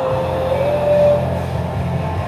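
Air rowing machine's fan flywheel whirring, surging and easing with each stroke. Rock music with a held sung note plays over it.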